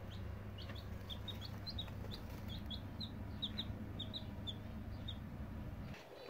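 Chicks a couple of days old peeping: a quiet, steady run of short, high peeps, several a second, over a low steady hum.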